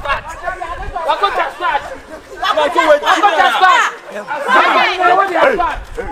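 Several people talking loudly over one another, with lively, rapid exchanges between voices.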